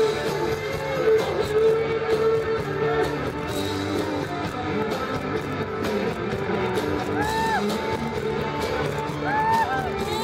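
Live rock band playing, with an electric guitar lead on top that bends notes up and back down about seven seconds in and again twice near the end.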